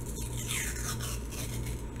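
Paper wrapper being pulled off a cardboard tube of refrigerated dough: two soft tearing rasps.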